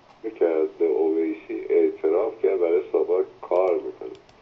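Speech only: a caller talking over a telephone line, the voice thin with little low end.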